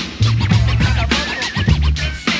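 Hip hop beat with a heavy bass line and turntable-style scratching, the pattern looping about every two seconds.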